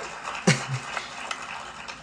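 A man's short, low chuckle in two quick pulses, with light clicking around it.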